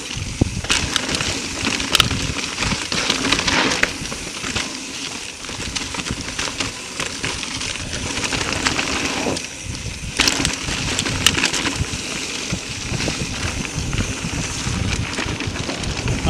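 Mountain bike rolling fast over dry fallen leaves on a dirt trail: steady crunching and crackling of the tyres through the leaf litter, with frequent clicks and knocks as the bike rattles over bumps.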